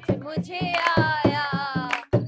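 Women singing together to rhythmic hand clapping and drum beats, about four beats a second. A woman's voice holds a long, wavering note through the second half.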